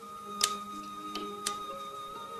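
Soft film-score music with sustained tones, over which bonsai shears snip sharply twice about a second apart, with a fainter snip between, as branches of a small juniper bonsai are cut.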